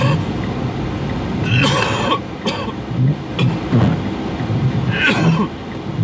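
A man coughing into his fist inside a van, a burst about two seconds in and another about five seconds in, over the steady low rumble of the moving vehicle.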